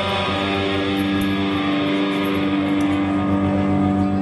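Live rock band holding a long chord on electric guitars over bass and drums, the ending chord of a song.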